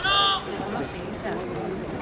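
A loud, high-pitched shouted call lasting about half a second at the start, then quieter voices calling from around the pitch during a football match.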